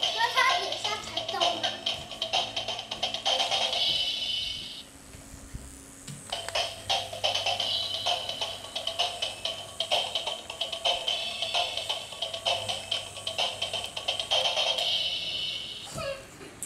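Battery-operated M&M's drummer toy playing a tinny electronic tune with a rapid clicking beat. The tune cuts out about five seconds in and starts again about a second later.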